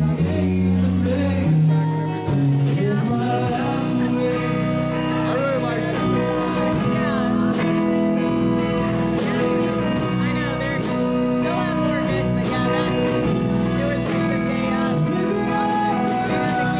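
Live rock band playing: electric guitars, bass guitar and drum kit, with a male voice singing. The bass notes stand out at first, and the drums fill in the sound after about three and a half seconds.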